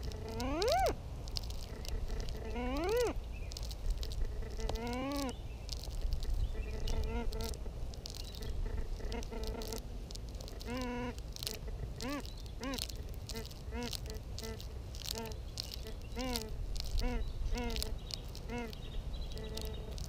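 Whites MX Sport metal detector's audio chattering. In the first few seconds there are a few rising-and-falling warbling tones, then short arched chirps at about two a second as the coil is swept near the spiked border edging, which the detectorist suspects has metal in it. A low rumble runs underneath.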